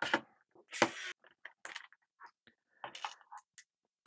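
A screwdriver on a screw and the plastic air-duct shroud inside an iMac G5 being handled and lifted out: a short scrape about a second in, then scattered light clicks and taps.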